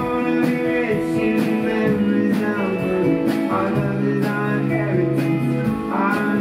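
Live band music: strummed acoustic guitar, electric guitar and a drum kit, with a drum hit about once a second.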